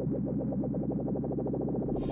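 Electronic background music: a fast, evenly repeating synthesizer note pattern over a held low bass, with a beat of crisp high ticks coming in right at the end.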